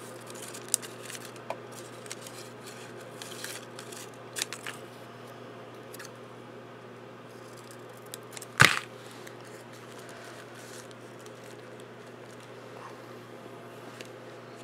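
Scissors snipping green paper to cut out leaves, with a few scattered snips in the first five seconds. A little past halfway comes one louder, sharp click, the loudest sound. A faint steady low hum runs underneath.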